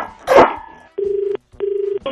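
Telephone ring-back tone: a steady, slightly warbling low tone sounding twice in quick succession, a double ring that signals the called phone is ringing. A short loud burst comes just before it.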